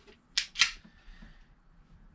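Sig P938 pistol's action giving two sharp metallic clicks about a fifth of a second apart as the cleared pistol is worked by hand.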